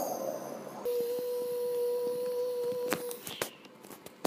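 A single steady tone held for about two seconds, followed by a few short clicks near the end.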